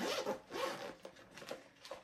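Zipper of a brown leather-look toiletry bag being pulled open, in two quick rasping pulls within the first second.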